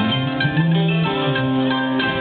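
Bluegrass band playing an instrumental passage live, with banjo, acoustic guitar and bass: plucked string notes over held bass notes, with no singing.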